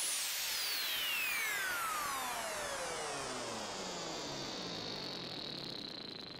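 Electronic downward-sweep effect closing a remix: a hissing sweep with several whining tones gliding slowly down in pitch, fading gradually, with a thin high whine held steady near the end.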